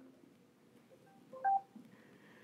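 Amazon Echo Show 8 smart display sounding a brief electronic chime, a low note stepping up to a higher one, about a second and a half in, as an Alexa video call connects; otherwise quiet.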